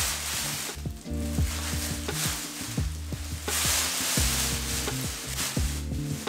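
Plastic gloves and a plastic cape crinkling, with wet squelching, as cream hair dye is squeezed from an applicator bottle and worked through wet hair by hand. Background music with a steady bass line plays underneath.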